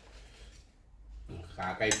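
Metal spoons clinking and scraping against plates of food as dishes are served and eaten, with a sharp clink near the end.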